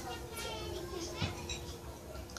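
Faint voices from a television programme playing in the room, including what sounds like a child's voice.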